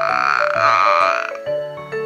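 Seven-month-old baby girl making a drawn-out, rough 'aua' babble that fades out about a second and a half in, over light background music.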